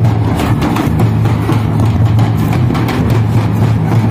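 Several two-headed barrel drums (dhol) beaten with sticks in a fast, steady rhythm of rapid strokes. A strong, steady low hum runs under the drumming.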